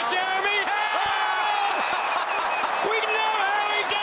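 A male television commentator's drawn-out exclamations over the steady noise of a stadium crowd.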